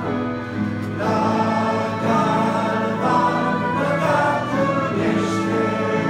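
A church congregation singing a Romanian hymn together in held notes, with a short breath between lines just after the start.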